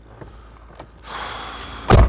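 Driver's door of a Mitsubishi L200 pickup pulled shut, heard from inside the cab: about a second of rustling, then one loud slam near the end.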